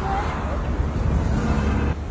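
Busy street traffic noise with a steady low rumble, and faint voices mixed in.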